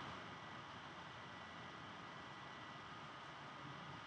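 Faint steady hiss of room tone, with a faint thin whine held underneath.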